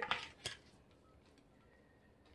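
A single light click about half a second in, a white stirring stick knocking against a glass measuring cup of melted glycerin soap; the rest is near silence.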